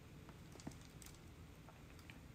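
Near silence: room tone, with a couple of faint short clicks about the middle.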